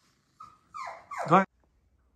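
A dog whining: a couple of short, high cries that slide steeply down in pitch, the second and loudest about a second and a quarter in.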